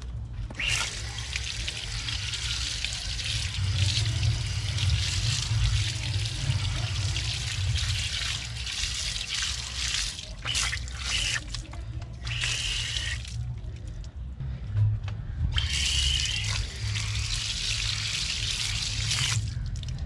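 Pressure-washer spray gun jetting water onto a car wheel and tyre, a loud steady hiss of spray. It runs in long bursts, stopping briefly about halfway through and again for about two seconds a little later before starting up again.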